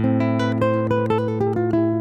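Godin Multiac ACS Slim SA nylon-string guitar played: a quick run of single notes stepping downward over a low bass note that rings on beneath them.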